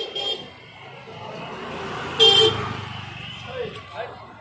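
Street traffic: a vehicle passes with a low engine rumble while a horn sounds two short toots, a brief one at the start and a louder one about two seconds in.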